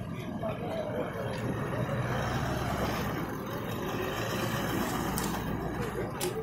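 Toyota Land Cruiser SUV's engine running as it drives slowly past, a low steady rumble, with people talking faintly in the background.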